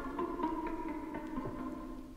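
Experimental electronic tape music: several sustained electronic tones held together, with a few sparse struck clicks, fading gradually towards the end.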